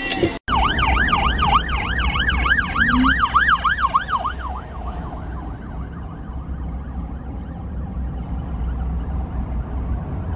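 A police car siren in fast yelp mode, its pitch sweeping up and down about three times a second. It is loud for the first four seconds or so, then fades but keeps going faintly, over the low rumble of a car driving on the highway.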